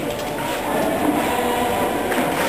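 Choir singing a hymn in a large church, held notes over a steady background of crowd noise.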